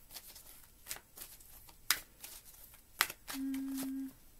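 A deck of tarot cards being shuffled by hand: a run of soft flicks with two sharper card snaps, one about halfway and one about three-quarters of the way in. Near the end a short steady hum from a woman's voice sounds over the shuffling.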